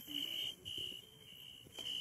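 A faint, steady high-pitched tone in the background, breaking off briefly a few times.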